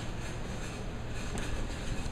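Steady low hum with a hiss over it, unchanging, with no distinct knocks or clicks.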